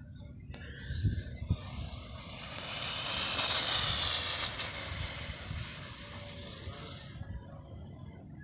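High-speed RC car making a pass: its high-pitched whine rises as it approaches, peaks about halfway through, then fades away. Two short knocks come early in the pass.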